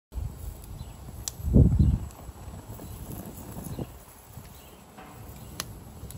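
Gas grill cooking hot dogs: a low, uneven rumble from the burner flames, swelling louder about a second and a half in, with a couple of faint sharp pops.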